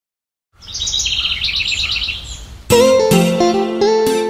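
Half a second of silence, then birds chirping in quick trills over a low background rumble, then a bright plucked guitar-like tune starts about two and a half seconds in.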